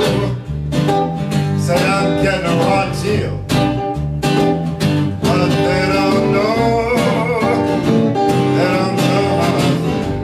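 Live band playing a song on guitars, an acoustic guitar strumming among them, with a regular beat about twice a second.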